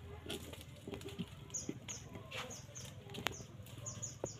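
A small bird chirping in quick runs of short, high, falling notes, with a single sharp click a little past three seconds in.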